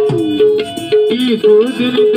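Live Bangladeshi folk band with hand drums playing a quick pattern, the bass strokes bending down in pitch; about a second in a man starts singing over the drums.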